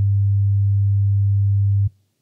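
A steady 100 Hz sine test tone, the low pitch example, held at one level and cutting off abruptly just before the end.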